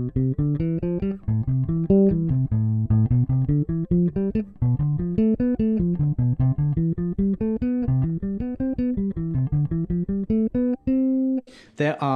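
Ibanez four-string electric bass played fingerstyle, running seventh-chord arpeggios and their scales up and down through the modes, from G Mixolydian to B Locrian: a steady stream of single notes about four or five a second. It ends on one held note about a second before the end.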